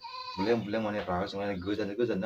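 A man talking in an animated voice, with a short high-pitched vocal sound at the start.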